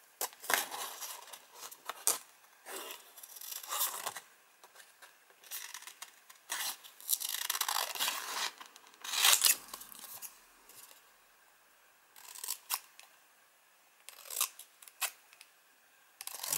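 Scissors cutting through stiff paper: a series of snips and short cutting runs, bunched together with brief pauses between them.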